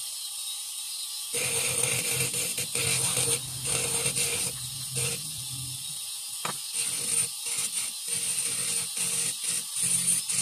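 Bench-mounted dental rotary spindle running with a high steady whine while a plastic jacket crown is ground against its bur, the rough grinding noise starting about a second in and coming and going in short spells.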